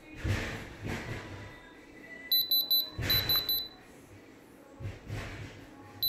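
Handheld Diamond Selector II diamond tester beeping in two quick runs of about four high-pitched beeps each, about two and three seconds in, as its probe held on the pendant's stones reads diamond.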